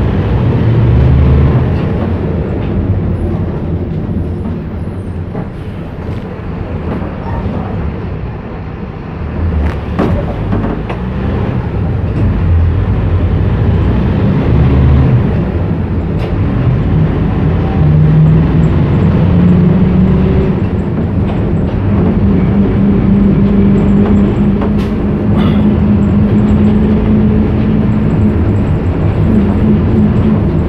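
Low rumble of a moving vehicle heard from inside, with a humming tone that rises in pitch about two-thirds of the way through and then holds steady.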